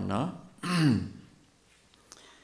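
A man's voice through a microphone: a drawn-out syllable on a steady pitch trails off, then a short, breathy vocal sound falling in pitch about half a second in, followed by a pause.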